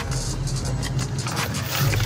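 Car noise heard from inside the cabin: a steady low hum of the engine and tyres, with a few short knocks.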